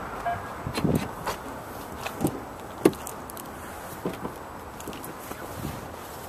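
A handful of scattered knocks and clicks from a vehicle door being opened, the sharpest click about three seconds in, over a steady outdoor background hum.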